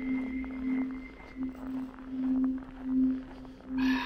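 Background music: a single low held note that swells and fades in slow pulses, with a fainter high held tone over the first second and a half.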